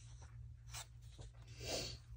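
Printed paper sheets being handled and slid over a cutting mat: faint rustling and rubbing, with one brief louder swish near the end as a sheet is moved aside.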